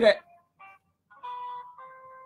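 Electronic musical tones: a short note about half a second in, then a steady held note that sounds again just before the end and slowly fades. The last words of a man's speech are heard at the very start.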